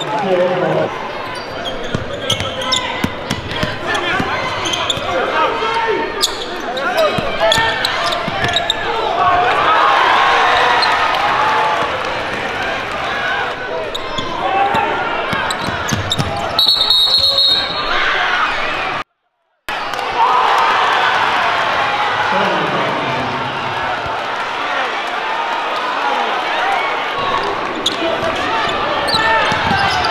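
Live high school basketball game in a large gym: steady crowd chatter and shouting, with a basketball being dribbled on the hardwood. About two-thirds of the way through, a referee's whistle sounds for about a second. Soon after, the sound cuts out completely for under a second.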